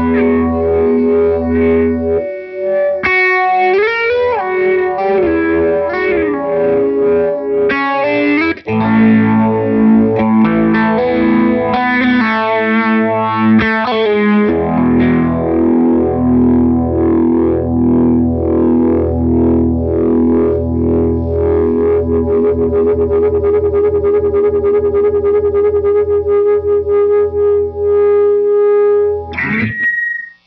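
A 1978 Gretsch Atkins Super Axe electric guitar played through an amplifier. It starts with held chords and gliding, bent notes, then from about halfway settles into a steady run of repeated strummed chords.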